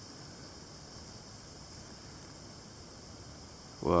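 Faint, steady background hiss with a thin, high, steady tone running through it. A man's exclamation of 'whoa' breaks in right at the end.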